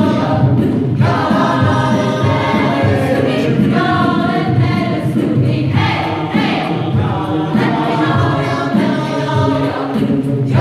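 Mixed choir singing in full chords, heard from the audience seats of a hall; the phrases break briefly about a second in and again near the middle before the singing carries on.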